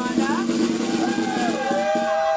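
Electric guitars of a live rock band holding ringing notes, with bends and downward slides in pitch, and no drum beat under them. Voices shout over the guitars.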